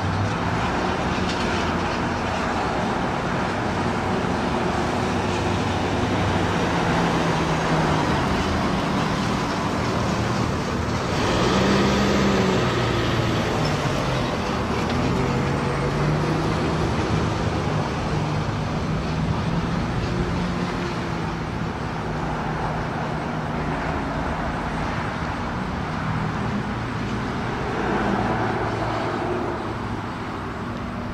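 Road traffic: cars and other motor vehicles passing on a busy multi-lane road, a steady mix of engines and tyre noise. A louder vehicle goes by about eleven seconds in and another near the end.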